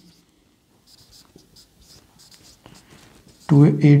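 Marker pen writing on a whiteboard: a string of short, faint, scratchy strokes, one per letter or line.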